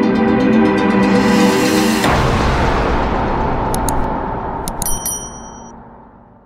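Logo-intro music sting: a held chord with a rising swell that breaks off about two seconds in into a hit, followed by a long fading tail with a few high chimes near the end.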